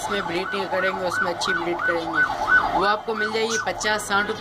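A siren going in a fast rising-and-falling yelp, about three sweeps a second, breaking off near the end.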